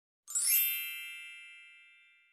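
A single bright, shimmering chime sound effect: one ding about a quarter second in, its high ringing tones fading away slowly.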